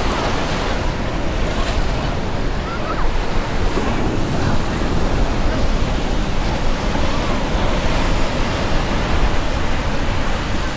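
Ocean surf breaking on a sandy beach as a steady wash of noise, with wind rumbling on the microphone.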